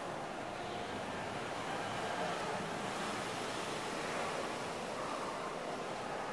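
Steady, even rushing hiss of background noise, like wind or air noise on the microphone, with no distinct events.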